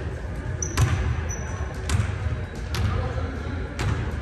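Basketball bouncing on a hardwood gym floor: four sharp bounces about a second apart. There are brief sneaker squeaks in the first second and a half.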